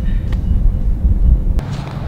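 Wind buffeting an outdoor microphone: an irregular low rumble with no other clear sound on top.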